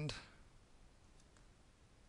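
Two faint clicks about a second into a quiet stretch: a stylus tapping on a pen tablet while handwriting on screen.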